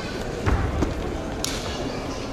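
A martial artist's foot stamping on a foam floor mat during a form: one heavy thud about half a second in and a lighter one just after, then a short sharp snap, like a hand slap or uniform snap, near the end.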